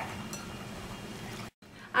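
Faint, even room noise with no distinct clinks or strokes, breaking off suddenly into a moment of dead silence at an edit cut.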